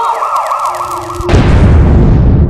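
Cartoon sound effects: a rapidly warbling, siren-like whistle, then a loud explosion boom about 1.3 seconds in that rumbles on and fades.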